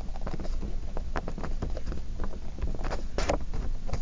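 Pen writing on paper: a run of short, irregular scratches and taps as the strokes are made, over a steady low hum.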